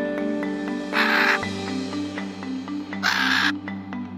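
Background music with steady tones, over which a macaw gives two short harsh squawks, about a second in and again about three seconds in.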